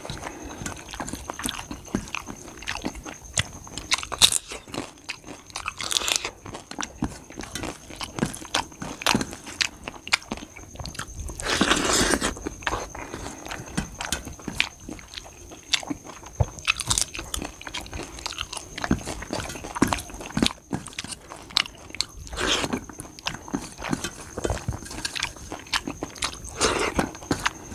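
Close-miked chewing and crunching of rice, curry and papad, with many small crackles and clicks. Fingers mix and scoop rice on a steel plate, with a few louder rustling swells.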